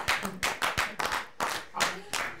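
A small audience clapping unevenly at the end of a performance, the separate hand claps coming several times a second.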